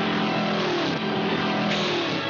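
Cartoon sound effect of a small motor vehicle's engine running at speed, with orchestral score under it.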